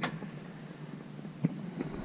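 Low room noise with a sharp click at the start and a lighter click about a second and a half in.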